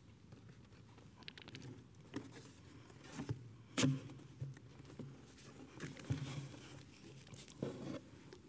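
Rummaging in a cardboard box: flaps and packing material rustling and crinkling, with scattered light knocks, the loudest a little under four seconds in.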